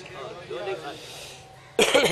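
A man clears his throat with a short, loud cough-like burst near the end, after a stretch of faint speech.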